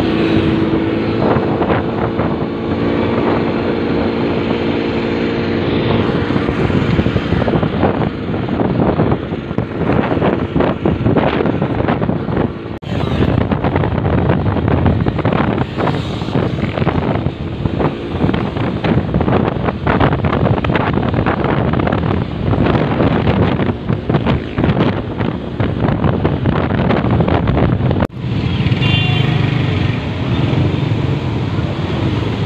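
A motorcycle engine running while riding in traffic, with heavy wind buffeting on the microphone. A steady engine tone is clear for the first few seconds, then the gusting wind noise dominates.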